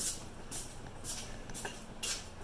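Footsteps scuffing on a concrete floor at a walking pace, about two a second, over a steady low hum.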